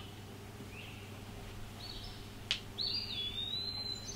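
Faint bird chirps over a steady low hum, with one sharp click about two and a half seconds in and a thin, level whistle after it.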